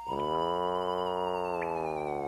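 A single long drawn-out vocal sound held on one note, starting abruptly and sagging slightly in pitch as it goes on.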